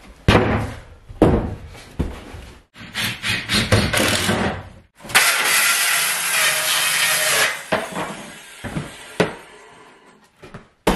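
Wooden boards knocked and handled, then a cordless circular saw cutting through a thin wooden board for about two and a half seconds, starting halfway through. A few more knocks follow as the cut-off strip drops to the floor.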